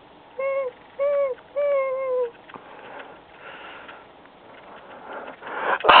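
A voice whimpering: three short whines, each rising and then falling in pitch, in the first two seconds or so. Near the end a louder, noisy sound builds up.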